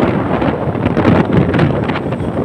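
Wind rushing over the microphone of a moving motorcycle, with the engine and road noise running underneath.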